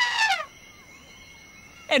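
A cartoon character's high-pitched voice makes one drawn-out sound that rises and falls in pitch and ends about half a second in. After that there is only a faint background with a few quiet thin tones.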